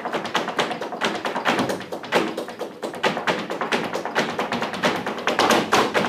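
Flamenco zapateado: a dancer's shoes strike the stage in rapid, irregular heel-and-toe taps, over flamenco guitars playing seguiriyas.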